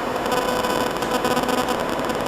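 A steady hiss and hum with a faint ringing tone running through it.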